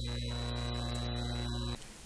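Steady electrical mains hum with a thin high whine above it, cutting off suddenly near the end.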